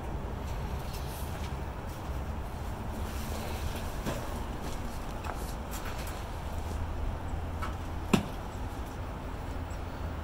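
Potting soil being spread by hand and with a garden trowel in a plastic tub: faint scattered scrapes and rustles over a steady low outdoor rumble, with one sharp click about eight seconds in.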